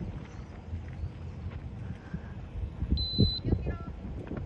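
Wind buffeting the microphone, with distant voices from the pitch. About three seconds in, a referee's whistle gives one short, steady blast.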